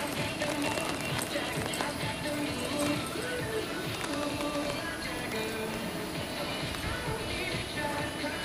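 Music playing from a radio, with faint hoofbeats of a horse moving on soft arena dirt under it.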